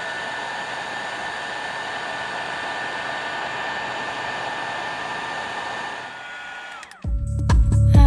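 Embossing heat gun blowing steadily, a rush of air with a steady high whine, melting embossing powder. Near the end it switches off and the whine drops away, and loud music begins.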